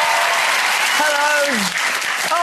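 Studio audience applauding and cheering as the theme music ends, with one voice calling out a long drawn-out sound about a second in that falls in pitch at its end.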